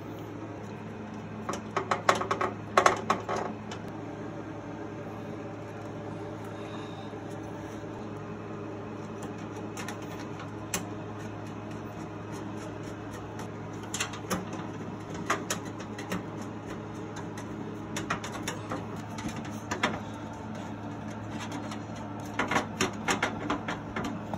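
Screwdriver driving motherboard screws into the standoffs of a steel PC case: scattered groups of small metallic clicks and taps, over a steady low hum.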